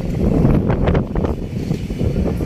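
Wind buffeting the microphone: a loud, steady low rumble, with faint sounds of the surrounding crowd under it.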